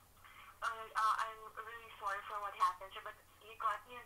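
A customer service agent speaking over the telephone line, a thin, phone-quality voice in several short phrases.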